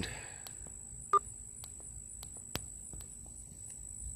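Insects calling in a steady high-pitched trill, with a brief pitched chirp about a second in and a few faint clicks.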